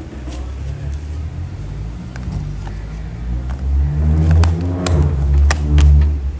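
A motor vehicle's engine running close by, its rumble swelling over the last two seconds and then fading. Several sharp clicks near the end come from a plastic food container being handled.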